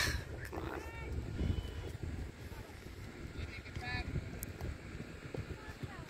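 Wind rumbling on the microphone, with a few faint, short calls in the distance, about a second in and again around four seconds.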